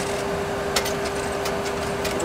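Steady cockpit background of a Boeing 737 Classic flight simulator: a constant hum with one held tone over a noise bed, and a couple of faint clicks from the controls.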